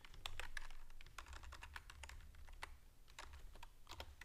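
Typing on a computer keyboard: a run of quick, irregularly spaced keystrokes, fairly faint.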